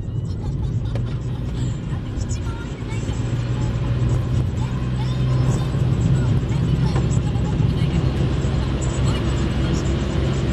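Inside a moving car: a steady low engine drone with tyre noise from a wet, slushy road, growing a little louder about halfway through.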